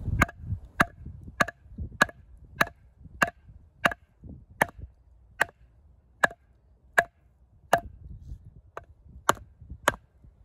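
Wooden baton striking the spine of a Schrade Old Timer 169OT fixed-blade hunting knife, driving the blade down through a log: about fifteen sharp, evenly spaced knocks, a little over one a second.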